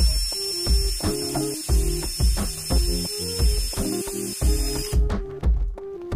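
Cordless drill boring into a rectangular steel tube: a steady high whine over a cutting hiss that cuts off about five seconds in, under background music with a steady beat.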